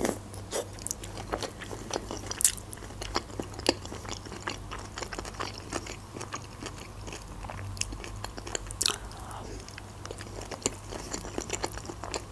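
A person chewing a mouthful of vinaigrette, the Russian beetroot salad, close to the microphone: irregular small crunches and mouth clicks throughout.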